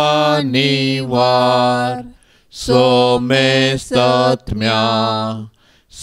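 A man singing a slow devotional refrain in long, held notes: three sung phrases with short breaths between them.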